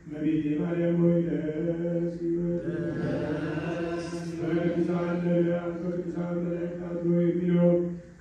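A man chanting in Ethiopian Orthodox liturgical style, holding a steady recitation tone on nearly one pitch, with a short break just before the start and another near the end.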